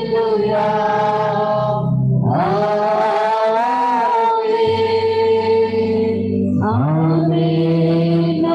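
A woman's voice singing a slow worship song in long, held phrases, each new phrase sliding up into its note (about two and a half seconds in and again near the end), over a sustained low keyboard accompaniment.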